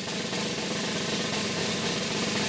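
A steady snare drum roll: a suspense cue added to the show's soundtrack ahead of a results announcement.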